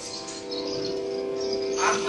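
Steady drone of the Carnatic music accompaniment: a few held notes sounding on their own with no singing, and a voice comes in near the end.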